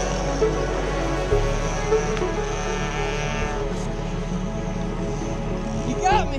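Electronic background music with a steady bass line that shifts about a second in.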